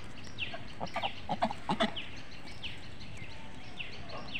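Birds calling: short, high chirps that fall in pitch, repeating about twice a second. About half a second in, a cluster of short, louder low sounds joins them for just over a second; grazing domestic geese are close by.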